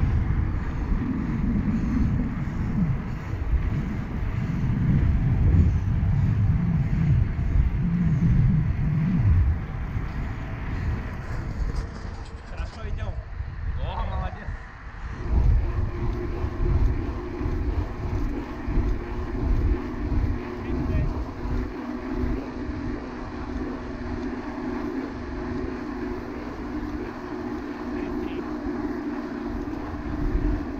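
Wind buffeting a handlebar-mounted action camera's microphone, with tyre rumble from a mountain bike riding fast on asphalt. About halfway through the sound becomes a steadier, lower hum.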